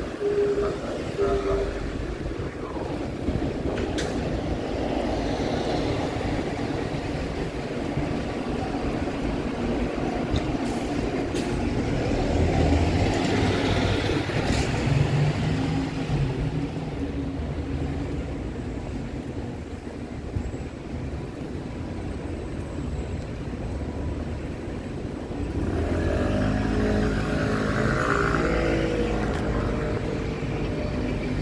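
Diesel city bus engines (Volvo B8R Pioneer buses) running in street traffic, idling and pulling away, louder about halfway through and again near the end.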